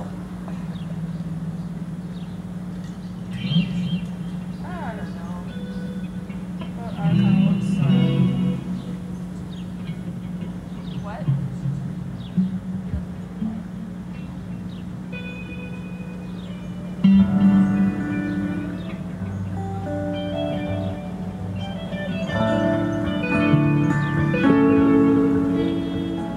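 Electric and acoustic guitars played loosely through a PA: scattered single notes at first, turning into steadier picking about two-thirds of the way in, over a steady low hum.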